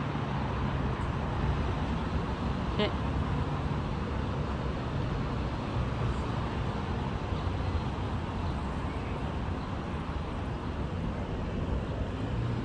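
Steady city road traffic noise with a constant low hum. A voice briefly calls out "hey" about three seconds in.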